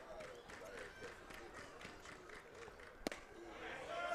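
Faint crowd chatter, with one sharp pop about three seconds in as a pitched baseball smacks into the catcher's leather mitt.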